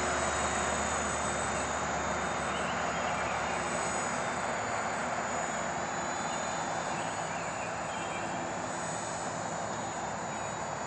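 Quadcopter's electric motors and propellers buzzing steadily in flight, with a thin high whine on top, fading slowly as the craft flies farther off.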